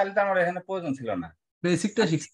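Speech only: a person talking, with a short pause about one and a half seconds in.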